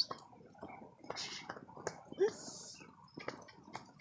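A flock of sheep walking on a dirt track: scattered soft hoof steps and rustling, with one short, faint bleat a little past two seconds in.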